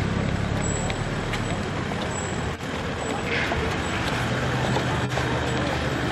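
Outdoor hubbub of indistinct voices mixed with vehicle and traffic noise, over a steady low hum.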